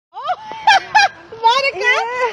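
People's voices: two short high-pitched whoops about a second apart, then excited chatter.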